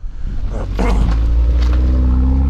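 Dinan-tuned BMW M235i's turbocharged straight-six, with its aftermarket exhaust, pulling away and accelerating. The note grows louder about a second in and rises steadily in pitch as the revs climb.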